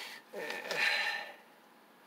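A man's breathy, hesitant "uh" with a sharp nasal exhale, lasting about a second.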